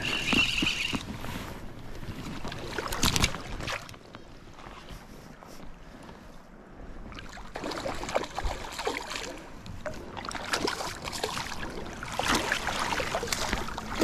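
Hooked rainbow trout splashing and thrashing in shallow river water as it is played in and a landing net is pushed into the water. The splashes come in irregular bursts and grow louder toward the end.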